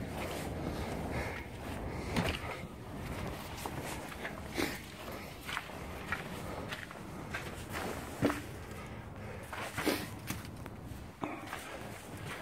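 Footsteps walking across wooden boards and gravel, an uneven series of knocks and scuffs.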